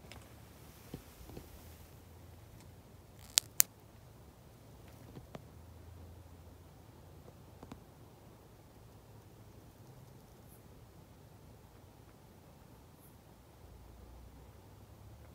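Two sharp clicks in quick succession about a third of the way in, with a few faint ticks of handling around them, over quiet night ambience with a faint low hum.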